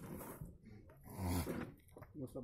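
Goat bleating, loudest about a second in, while it is restrained just after having its ear tagged.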